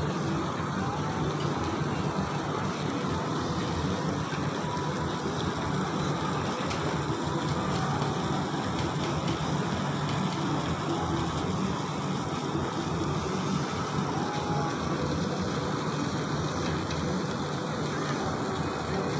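Steady city ambience: an unbroken hum of distant traffic and activity, with no distinct events.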